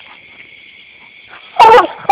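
Coonhound giving one loud bark near the end, the tree bark of a hound that has a raccoon up a tree. A steady high-pitched hiss runs underneath.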